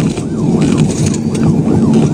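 Police car siren in a rapid yelp, rising and falling about three times a second, over the patrol car's engine and road noise during a pursuit.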